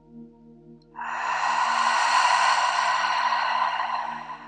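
A long, deep breath out through the mouth close to the microphone. It starts abruptly about a second in and tapers off over about three seconds. A soft, sustained ambient music drone plays underneath.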